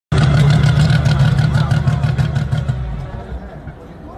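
Race car engine running with rapid crackling exhaust pops, about five or six a second, as flame spits from the exhaust. The engine and the crackle stop about two and a half seconds in and the sound dies away.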